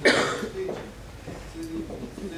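A person coughs once, loudly, right at the start, followed by low murmured talk in a reverberant hall.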